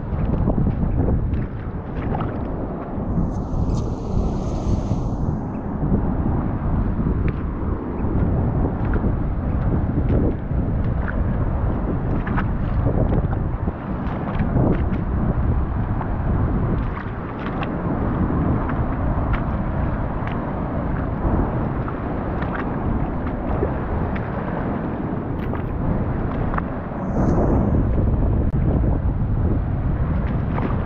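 Wind buffeting the microphone in a steady low rumble, over surf and shallow water washing across a rocky beach.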